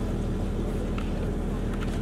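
Steady low hum with a faint even background noise and no clear events.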